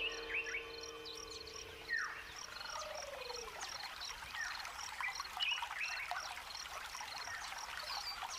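Wild birds calling in the bush: a high chirp repeating about three times a second, with scattered short calls and whistles over it. One call about two seconds in slides downward. The end of background music fades out at the start.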